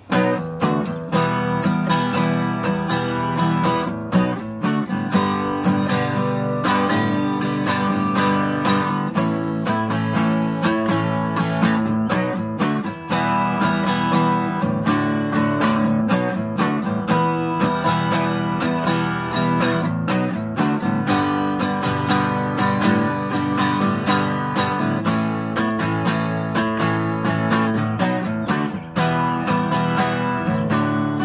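Solo acoustic guitar strummed steadily, chords ringing in an even rhythm with no singing: the instrumental opening of an acoustic song.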